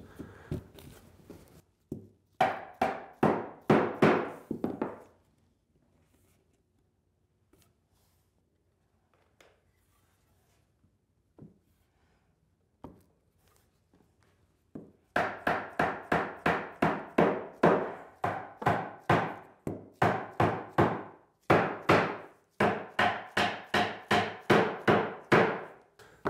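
A mallet striking wooden bench legs, driving their glued tenons down into the mortises of the seat. A short run of quick blows, a pause of several seconds, then a long, steady run of blows at about two or three a second.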